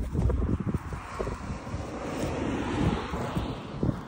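Wind buffeting a phone microphone: an uneven low rumble with irregular gusty thumps.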